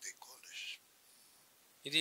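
Speech only: a man's voice trailing off softly and breathily, a second of near silence, then a man's voice picking up again at the very end.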